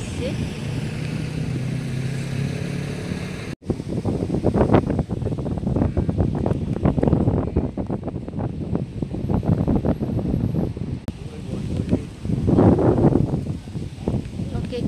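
A boat engine hums steadily for the first three seconds or so. The sound then cuts off abruptly, and wind buffets the phone's microphone in irregular gusts.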